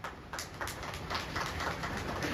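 Scattered hand clapping from a small audience, starting about a third of a second in and growing fuller.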